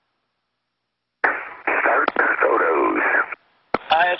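Space-to-ground radio link: about a second of dead silence, then a roughly two-second burst of indistinct, crackly radio transmission with clicks. Near the end another click comes as a radio voice begins.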